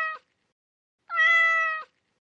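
A cat's meow: the end of one meow, then a second about a second in, the two alike in pitch and shape, each a steady held note that stops cleanly.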